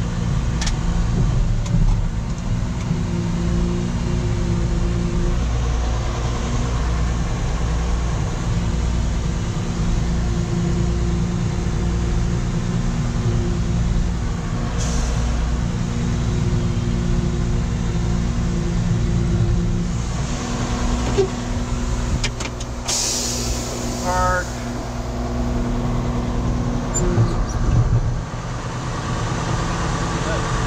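Caterpillar 140H motor grader's diesel engine running steadily as the grader is driven, heard from inside the cab. A brief sharp hiss about three-quarters of the way through.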